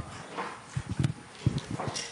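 A few soft, low knocks and rubbing noises of a live microphone being handled, as the next audience questioner takes it before speaking.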